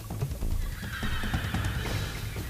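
A horse whinnying for about two seconds, starting about half a second in, over background music with a steady low bass.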